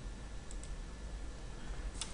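A single faint computer-mouse click about half a second in, its press and release heard as two quick ticks, over a steady low electrical hum.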